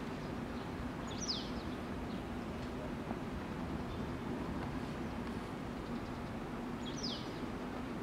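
A small bird gives two short, falling chirps, one about a second in and one near the end, over a steady low hum and outdoor background noise.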